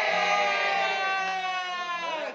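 A group of middle-school students shouting a cheer together in unison, held as one long drawn-out call that slowly sinks in pitch.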